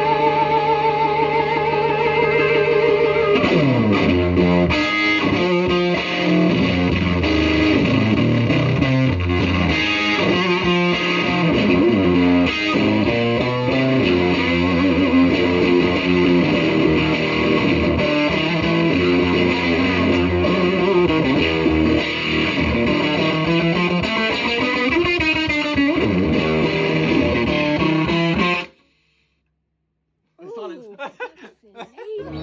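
1963 Fender Stratocaster played through a distorted amp: it opens on a long held note with wide vibrato, then the pitch dives down and a run of lead lines follows. The sound cuts off suddenly near the end.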